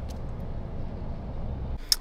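Steady low rumble of a car heard from inside the cabin, ending abruptly near the end with a short click.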